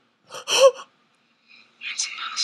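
A woman gasping in excitement: a short voiced gasp about half a second in, then a breathy gasp near the end.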